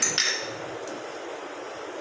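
Small glass bowl set down on a stone countertop: a couple of sharp glass clinks at the start, then a single light tick a little before the one-second mark, over a low steady hiss.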